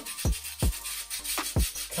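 A brush scrubbing a wet rubber golf grip worked up with washing-up liquid, in several short, uneven rubbing strokes. The lather is coming up foamy.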